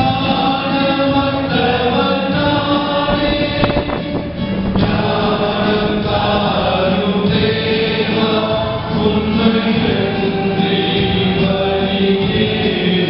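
A church choir singing a Tamil Christian song, the voices holding long notes over an instrumental accompaniment.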